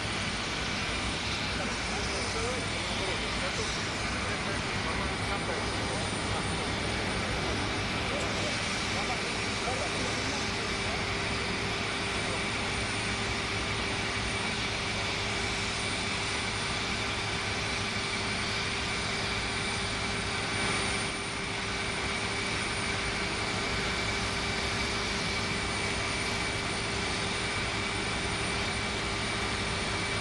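Aircraft engine running steadily: an even rumble with a steady high whine over it.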